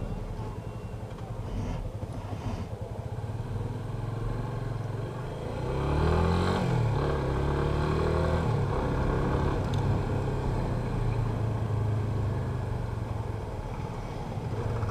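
Yamaha FZ25's 249 cc single-cylinder engine under way at low revs. About six seconds in the note climbs under throttle, falls back, then holds a steady pitch at a moderate cruise.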